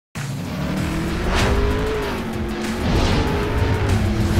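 Sound-designed race car engine revving, its pitch rising and falling, with a whoosh about one and a half seconds in, over music.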